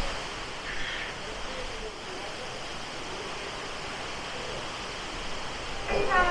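Steady rush of rain and wind on a cruise ship's open deck in a storm, with wind buffeting the microphone in the first couple of seconds.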